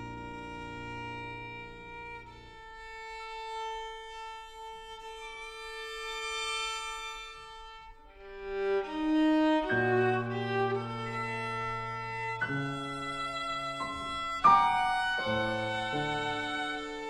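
A violin and piano duo playing contemporary classical music. The violin holds long, quiet notes over a sparse piano for the first half. About halfway, the piano enters with low bass notes and the playing grows fuller and louder, with a sharp accent near the end.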